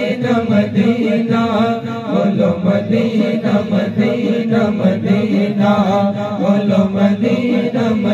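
Several men singing a naat together into microphones, sustained chanted vocal lines that bend and waver in pitch.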